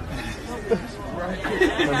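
Background chatter of voices, quieter and broken up, recorded on a phone's microphone, with a man's voice speaking clearly again near the end.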